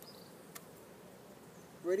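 Quiet outdoor background with faint insect buzzing, and one light click about halfway through.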